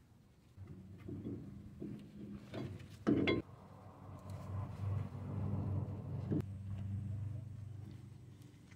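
Handling noise and a sharp knock about three seconds in, with a smaller one later, as a wire is wrapped to hang a removed brake caliper from the coil spring. Under it is a steady low hum that starts about half a second in.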